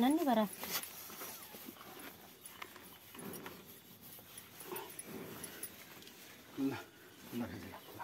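A restrained water buffalo making a few short, faint low grunts while its horn is being cut with a hacksaw, after the tail of a wavering cry in the first half second.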